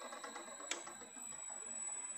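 AC induction motor running under a Siemens SINAMICS G120 variable-frequency drive, a steady mechanical hum with a thin high-pitched whine over it. A toggle switch on the control panel clicks once, under a second in.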